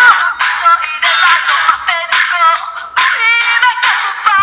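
A song: a woman singing in Greek over its instrumental backing.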